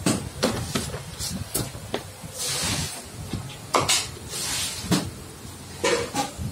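A run of sharp knocks and clatter, with two short hissing bursts, over a low steady rumble.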